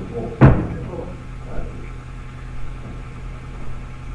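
A single loud thump about half a second in, dying away quickly, over a steady low mains hum.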